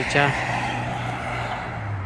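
A car passing on the road: tyre rush that fades after the first moment, over a steady low engine hum that drops slightly in pitch near the end.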